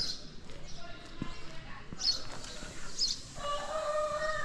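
Quiet street ambience with a faint knock about a second in, then a rooster crowing near the end: one long, steady call.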